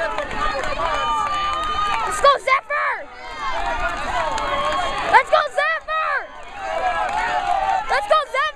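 Several spectators shouting encouragement at once, in overlapping yells: some short and quickly repeated, a few drawn out.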